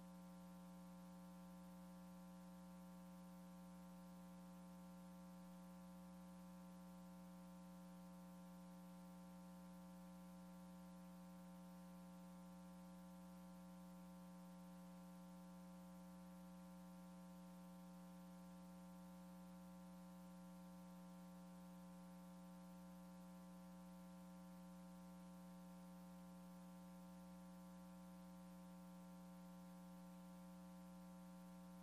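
Near silence: a faint, steady electrical hum from the sound feed, one low tone with a ladder of fainter overtones, unchanging throughout, over light hiss.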